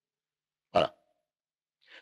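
Silence broken once, less than a second in, by a single brief throaty vocal sound from a man, a short grunt-like noise of about a fifth of a second.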